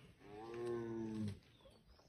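Sambar deer giving its alarm call, the warning a sambar gives on sighting a predator such as a tiger: a single drawn-out honking call lasting about a second, dropping slightly in pitch as it ends.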